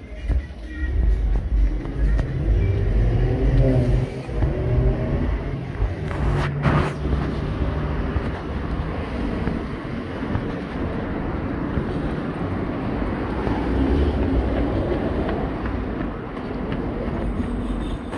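Road traffic passing on a city street: vehicle engines and tyres making a steady low rumble, with a single sharp knock about six and a half seconds in.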